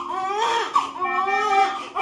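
Newborn baby crying, a run of high, wavering cries with short catches of breath between them, over a steady low hum.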